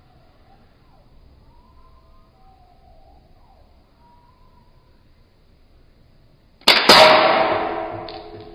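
A spring-powered air-cocking toy pistol, a Sanei Walther P38, fires near the end: a sudden sharp snap, then a ringing that dies away over a second or two.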